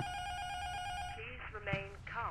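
A steady electronic alert tone lasting just over a second, cut off abruptly, then a voice begins speaking, the start of an official announcement.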